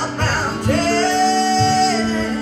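Live country music: acoustic guitar and singing, with a singer holding one long note from a little under a second in until near the end.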